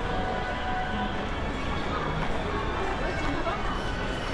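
Shopping mall ambience: a steady din of indistinct voices from passers-by, with faint background music.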